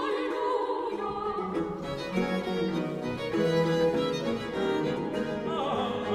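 Baroque sacred vocal music for solo voices, choir, viols and basso continuo. High voices sing with vibrato; about a second in, the bass line and lower parts come in and the ensemble sound fills out.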